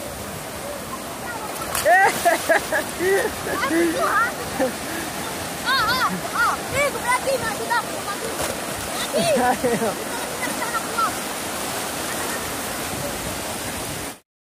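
Sea surf washing steadily in the shallows, with short high shouts from children playing in the water scattered over it from about two seconds in until near eleven seconds.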